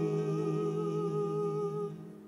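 A singer humming one long held note with a slight vibrato. It stops just before the end.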